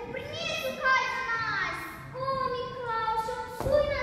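Children's voices calling out together, with long held notes and gliding pitches; a single sharp thump near the end.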